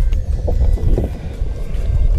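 Wind buffeting the camera microphone: a loud, gusty low rumble.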